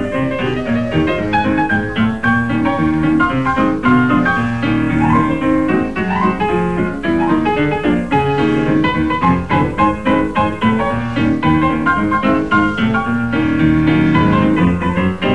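Instrumental background music: a busy run of short notes over held lower notes.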